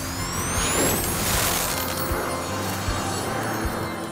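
Cartoon firework rocket launching: a high whistle rising in pitch over the first second, then a hissing burst as it goes off, over background music.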